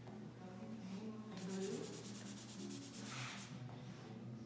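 Soft pastel stick rubbed across paper in quick repeated strokes, starting about a second and a half in and stopping shortly before the end.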